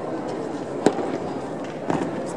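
Drill rifles handled in unison by a drill team: a sharp crack about a second in, then a second, more ragged clap of several near-simultaneous hits just before the end, over steady hall noise.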